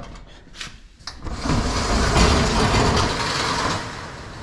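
Steel roll-up storage unit door being opened: a couple of clicks at the latch about half a second and a second in, then the door rolling up, loud for about two and a half seconds.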